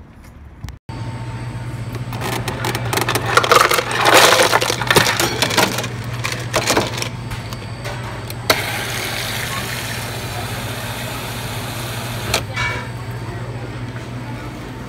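Restaurant room tone: a steady low hum with a busy spell of clatter and indistinct noise a few seconds in, and a couple of single sharp clicks later on.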